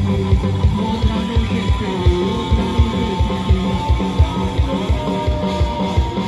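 A live rock band playing loudly: electric guitars over a steady, fast drum beat of about four kicks a second.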